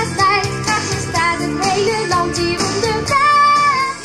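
A group of children singing a song in unison with a woman's lead voice, over backing music.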